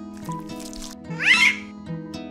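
Light background music of plucked notes, with one short high cry that rises and then falls about a second in, the loudest sound here.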